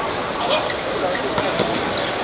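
Football kicked on an outdoor hard court: a couple of sharp thuds of the ball about one and a half seconds in, over steady background noise and players' shouts.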